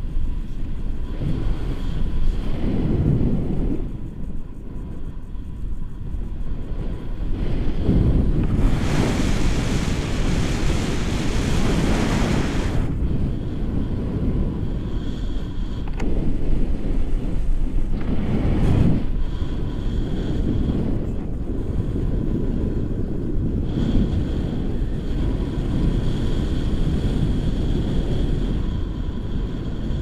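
Wind rushing over an action camera's microphone in tandem paraglider flight: a steady, low buffeting, with a louder, hissier gust lasting about four seconds near the middle.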